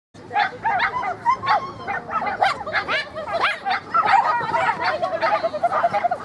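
A small dog barking in rapid, high yips, several a second and one after another, while it runs an agility course.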